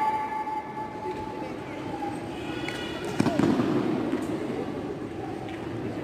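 Echoing sports-hall ambience with faint voices. A held shout from just before fades out at the start, and a single sharp thud comes about three seconds in.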